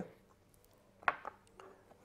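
A chef's knife knocking on a wooden cutting board while a red bell pepper is cut: a few short, sharp knocks about a second in, otherwise quiet.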